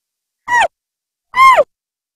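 Channel logo sting sound effect: two short, high-pitched calls about a second apart, the second a little longer, each falling in pitch at its end.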